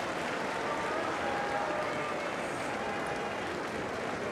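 Spectators in a sumo arena applauding with steady hand clapping, with a few voices calling out in the crowd.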